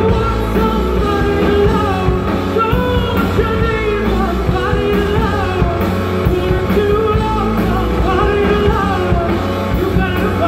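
Live rock band playing with electric guitar, bass guitar and drums, and a woman singing lead over them.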